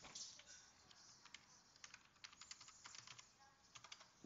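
Faint computer-keyboard typing: a run of about a dozen quick keystrokes starting about a second in, as a short folder name is typed.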